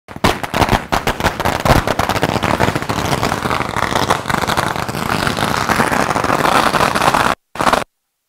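A string of firecrackers going off in a rapid, continuous crackle of many sharp pops. It cuts off abruptly near the end, followed by one short final burst.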